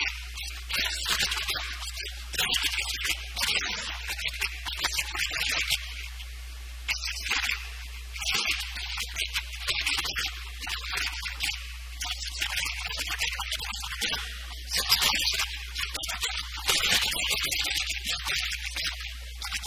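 A man lecturing in Urdu, his voice thin-sounding, over a steady low hum.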